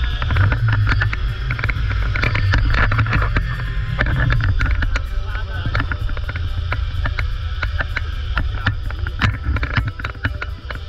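Wind rushing over a camera microphone on a fast zipline ride: a heavy, continuous rumble with frequent crackles from the buffeting.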